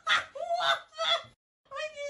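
A person laughing in short pitched bursts, then a brief pause and a held voiced sound near the end.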